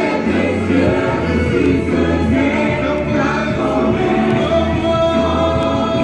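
Gospel worship song sung by a group, led by a man singing into a microphone, over a steady low accompaniment. A long note is held near the end.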